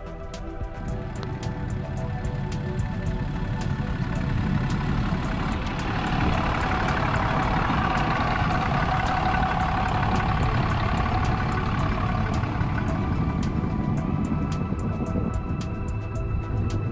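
Background music over a full-size 4x4 truck driving over the camera on a snow-covered road. Its engine and the rush of big off-road tyres on snow build, loudest through the middle, then ease off.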